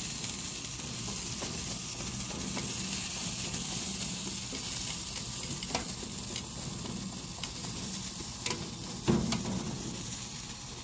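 Green beans sizzling steadily in a hot cast-iron skillet as they are tossed with metal tongs. A few sharp clicks of the tongs on the pan are heard, and a louder knock comes near the end.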